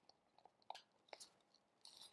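Faint, sparse ticks and scrapes of a wooden stir stick against the inside of a plastic cup as silicone rubber is mixed with a thixotropic thickener.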